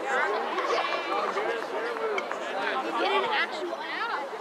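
Several people talking and calling out at once, their voices overlapping into chatter with no single voice standing clear.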